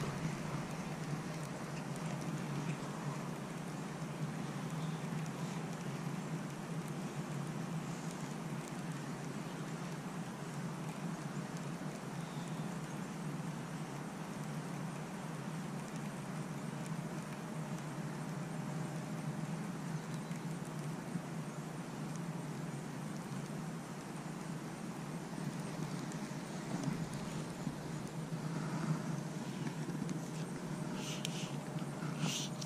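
Steady outdoor background noise: an even low hum with a faint hiss over it, unchanging throughout.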